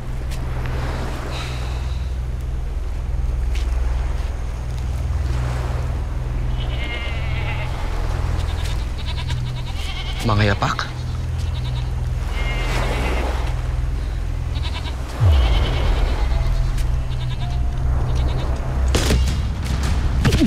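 Sheep bleating several times over a low, steady drone. A sudden low hit comes about three-quarters of the way through.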